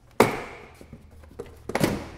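Plastic engine cover on a Nissan Xterra snapping free of its press-fit rear mount with a sharp crack just after the start, then a second clattering knock of the plastic cover near the end.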